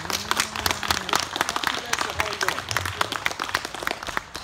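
Audience applauding: many hands clapping in quick, irregular succession, with a few voices mixed in.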